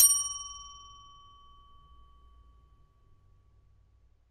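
A single bell-like ding: one sharp strike that rings out at a clear pitch and fades away over about three seconds.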